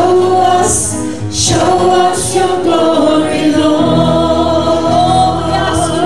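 A live worship band plays a slow song, with women singing the melody over acoustic guitar, a Yamaha CP stage piano and bass guitar. The sung lyric is "Show us, show us Your glory," and the singers hold long notes over sustained bass.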